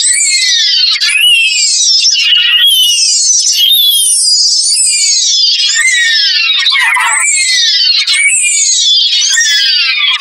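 Heavily effects-processed, pitched-up voice clips repeating over and over. Each one is a high falling glide lasting about a second, with no bass at all, giving a shrill, synthetic, theremin-like warble.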